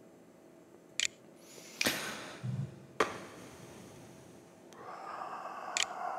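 A few faint, sharp mouse clicks, and a short sniff through the nose about two seconds in, with breathing near the end.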